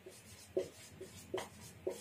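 Whiteboard marker scratching on a whiteboard in several short, faint strokes as a word is written.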